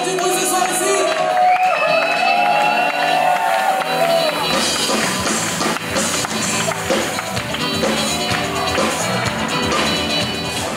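Live pop-rock band playing through a PA: a melodic lead line for about four seconds, then bass and drums come in with a steady beat.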